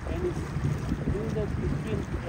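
Steady low rumble of a tour boat's motor under way, with wind on the microphone, and voices talking indistinctly over it.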